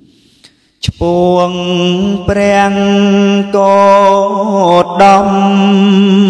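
A man singing a Khmer traditional song into a handheld microphone: after a quiet first second, long held notes on a nearly steady pitch, broken by a few brief gaps.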